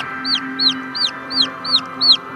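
A chick peeping over and over in short, high, arched calls, about three or four a second.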